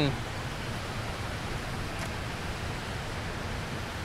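Steady rush of water spilling over a small spillway and running through shallow rocky riffles.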